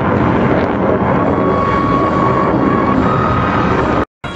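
Loud, steady jet noise from an F-16 fighter overhead during its display. A faint high whine rises out of it about a second and a half in and steps slightly higher near the end.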